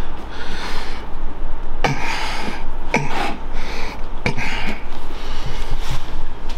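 Handling noise of a wooden workpiece taped to an MDF template with double-stick tape being pressed together and picked up: rubbing and rustling, with three sharp knocks along the way.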